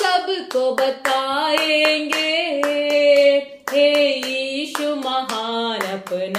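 A woman singing a worship song unaccompanied while clapping her hands in a steady rhythm. The melody includes a long held note in the middle.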